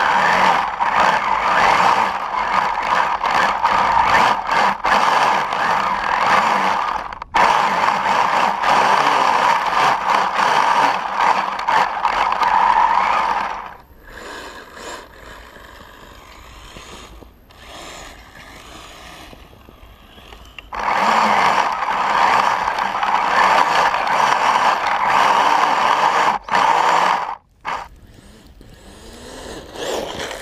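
Brushless electric motor and plastic gearbox of an RC snowmobile driving its track through soft snow: a loud, rough mechanical whir heard close up from a camera on the sled. About fourteen seconds in it falls to a much fainter sound for some seven seconds, then comes back loud, with brief cut-outs near the end.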